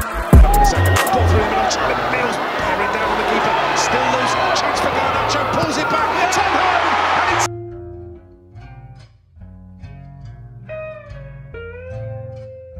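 Football crowd in the stands cheering and clapping, loud and close on a phone microphone. About seven seconds in it cuts off suddenly to quieter background music with a low bass line.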